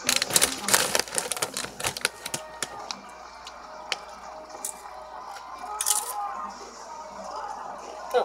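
Handling noise on the phone: a quick run of clicks and rustles in the first few seconds. It is followed by faint background voices and music.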